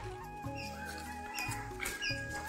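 Background music: a stepping melody line with short repeated high notes over a pulsing bass.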